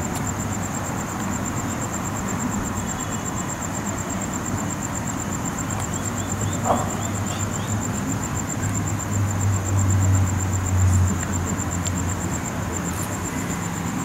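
Outdoor night ambience: steady traffic rumble, with a vehicle engine louder for a couple of seconds about two-thirds of the way in. A high, evenly pulsing insect trill runs throughout.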